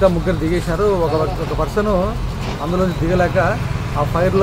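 A man speaking in Telugu, over a steady low rumble of road traffic.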